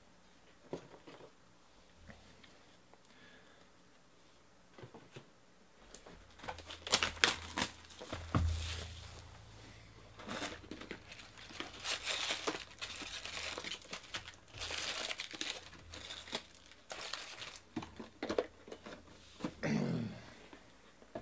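Shrink wrap being torn off a 2018 Bowman Jumbo hobby box and crinkled, then the box opened and its foil card packs rustling as they are pulled out and stacked. After a few quiet seconds with small clicks, irregular crinkling and tearing starts about six seconds in and goes on in bursts.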